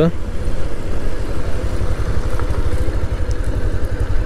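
Motorcycle engine running steadily as the bike is ridden, a low pulsing rumble heard from the rider's own machine, under a steady rush of wind and road noise with a faint steady whine.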